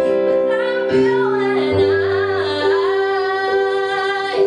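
A woman singing, accompanying herself with held chords on a Roland digital keyboard; the chord changes about a second in and again just before the two-second mark.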